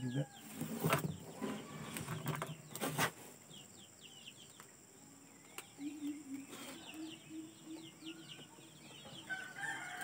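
Crackling and clicking of plastic mesh and cord being handled as the mesh of a fish trap is stitched, with small birds chirping over and over. About six seconds in, a chicken calls for a couple of seconds.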